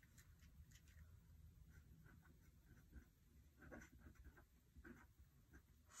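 Pen writing on planner paper, very faint: a series of short, soft scratching strokes as a word is written by hand.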